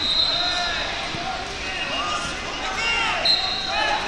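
Busy wrestling-hall sound: many short squeaks from wrestlers' shoes on the mats, with shouted voices. A short high whistle blast at the start and another a little after three seconds in, typical of referees' whistles on the mats.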